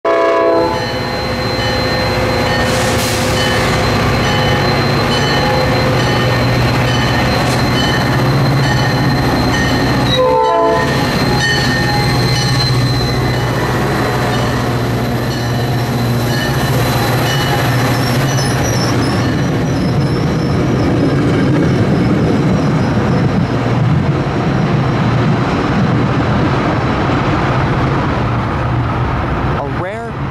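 EMD F40PH diesel-electric locomotive departing with a commuter train: a short horn blast in the first second, then its two-stroke V16 diesel engine running and the coaches' wheels rumbling over the rails as the train passes, easing off near the end.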